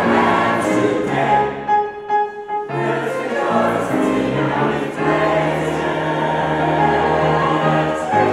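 Mixed choir of men and women singing in chords, settling into a long held chord over the last three seconds.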